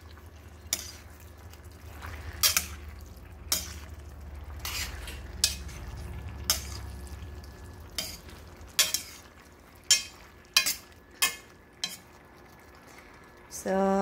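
Metal tongs stirring and tossing eggplant and onion slices in a stainless steel pan, clinking against the pan about a dozen times at irregular intervals. Underneath is the soft sizzle of the soy-sauce mixture simmering.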